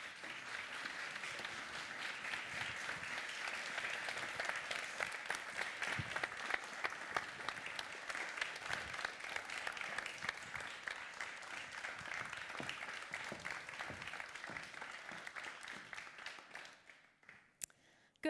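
Studio audience applauding: steady clapping from many hands that dies away near the end.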